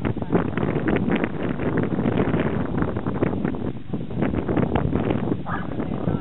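Wind buffeting the camera's microphone: a loud, rough rumble that comes in uneven gusts.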